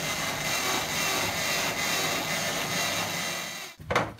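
A steady rushing, hissing noise that cuts off suddenly near the end.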